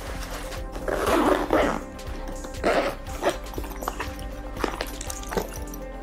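Zippers being pulled closed on a soft-sided fabric pet carrier: several short zipping strokes, the longest about a second in, over steady background music.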